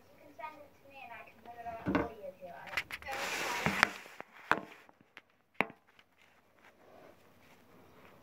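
A child's voice saying "thank you", then a loud rustle and a few sharp clicks and knocks as a phone camera is handled and swung around.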